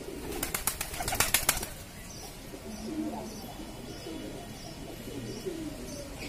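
Pigeons cooing in low, repeated calls through the second half, after a loud burst of rapid clattering clicks in the first second and a half.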